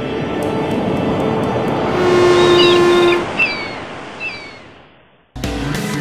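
Logo sound effect: a wash like ocean surf swells up and fades away, with a few short, high, falling calls in the middle. It stops just after five seconds in, and strummed guitar music starts suddenly.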